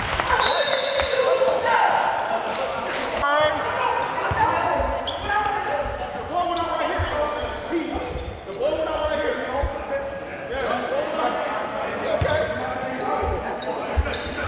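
Gym sounds of a basketball game: voices of players and spectators in an echoing hall, with a basketball bouncing on the hardwood floor in scattered thumps.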